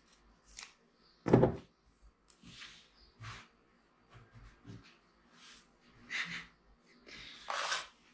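Handling noises of a DJI Mavic 3 Classic drone as its folding arms are opened and it is set down on a wooden table. It is a scatter of short knocks and rustles, the loudest a thump about a second and a half in, with a longer rustle near the end.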